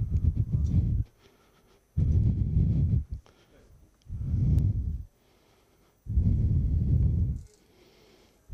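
A microphone being blown into to test it, because it was not working: four breath-like bursts of low rumble, each about a second long and roughly two seconds apart.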